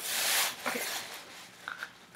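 A short rustle of a thin plastic bag being handled, with faint small handling noises after it.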